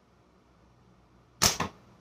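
Slingshot shot: the flat latex bands snap forward on release, launching an 11 mm steel ball, heard as a sharp crack about one and a half seconds in with a second, quieter crack just after. The shot misses the spinner target.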